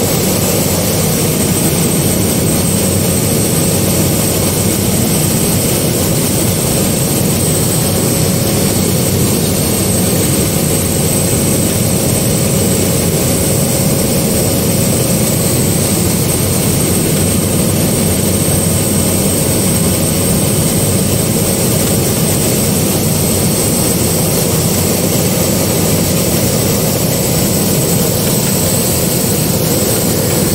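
Single-engine propeller plane's engine and propeller droning steadily, heard inside the cockpit, with a thin high whine over it, as the plane descends on approach to land.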